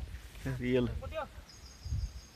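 A man's voice speaking a few short words outdoors, over low wind rumble. About halfway through, a faint steady high-pitched whine starts up and holds.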